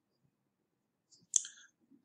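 A single short click about one and a half seconds in, in an otherwise near-silent pause.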